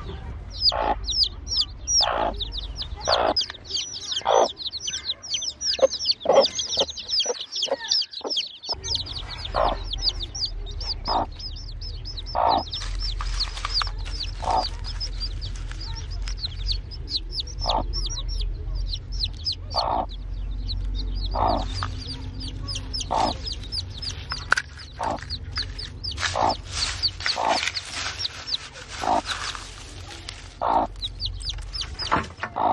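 Newly hatched chicks peeping rapidly in short, high, falling cheeps, with a broody hen clucking about once a second among them.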